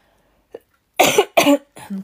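A woman coughing: two sharp coughs in quick succession about a second in, then a shorter, softer one near the end.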